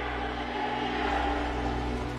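Film score holding low sustained chords under the rushing roar of a jet crash sound effect, which swells about a second in.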